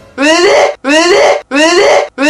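A young man's loud, anguished cries of disgust, four in a row, each about half a second long and rising in pitch.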